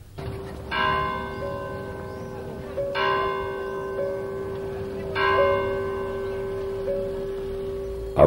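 A church bell tolling: three strikes a little over two seconds apart, each ringing on over a steady low hum.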